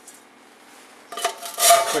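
Faint room noise, then from about a second in a short spell of metallic scraping and clattering as a thin steel can is handled and a burner pipe is pushed into the hole drilled in its side.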